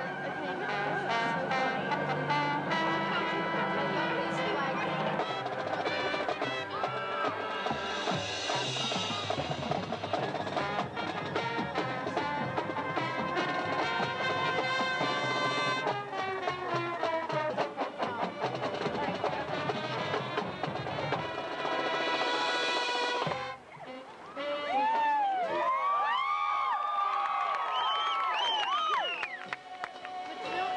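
High school marching band playing a field-show piece, with full brass chords and drum hits. About three-quarters of the way through the music breaks off briefly, then comes back as a thinner passage of sliding, bending notes.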